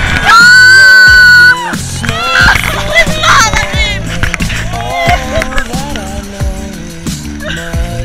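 Fans cheering and screaming in celebration over background music. A loud, held scream comes in the first second or so, followed by shorter whoops and excited shouts.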